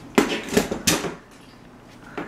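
Metal-framed folding chair knocking and clattering three times within the first second as a toddler sets it back upright.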